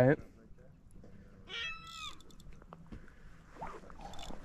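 A bird calling once, a high-pitched call that slides down in pitch about halfway through, over faint scattered clicks.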